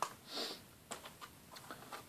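A short sniff, then a few faint clicks of plastic Blu-ray cases being handled.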